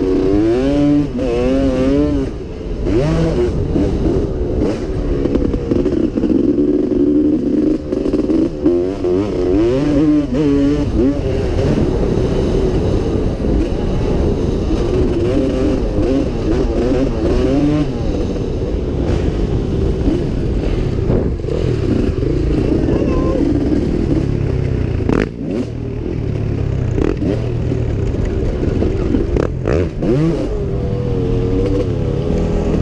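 Pre-1990 Yamaha YZ250 two-stroke motocross bike ridden hard on a dirt track, heard from on board: the engine revs rise and fall with the throttle and gear changes, easing off briefly twice. Wind rushing over the microphone runs underneath.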